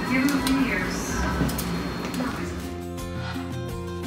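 Indistinct voices and a few sharp clicks in a room, then background music with steady held notes takes over about two and a half seconds in.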